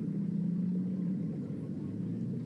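A low, steady hum with a faint rumble beneath it; its higher note fades out about a second in.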